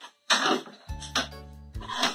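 Background music, with a wooden chair scraping and knocking as someone gets up from a table, about a second in.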